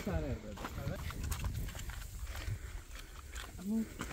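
Footsteps crunching on dry gravelly ground and grass, with a low rumble of wind on the microphone. Short wordless voice calls come right at the start and again near the end.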